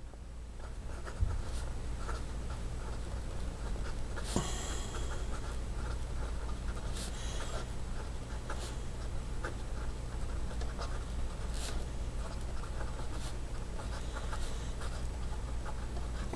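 Fountain pen with a medium steel nib writing on Rhodia paper: small, soft nib scratches as the letters are formed, over a steady low hum.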